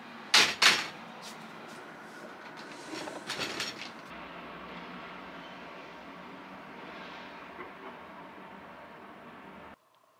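Two loud, sharp clacks of a white folding drying rack's frame and rails snapping into place, then a few softer knocks about three seconds in, over a steady background hum that cuts off suddenly near the end.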